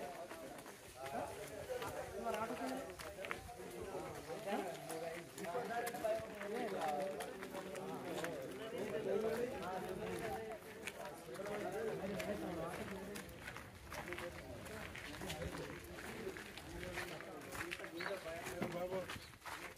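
Indistinct voices of people talking throughout, with the scuffing footsteps of several people walking on a dirt lane.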